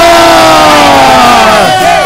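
One voice holding a long, loud shout, its pitch slowly falling until it cuts off near the end: the drawn-out end of an announcer-style introduction of the guest's name.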